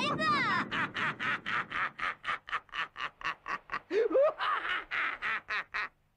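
A distressed cartoon voice pleading for help in quick, choppy pulses, about five a second, with a short rising cry about four seconds in.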